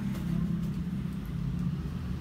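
Low, steady mechanical hum and rumble in the background, with no change in pitch or level.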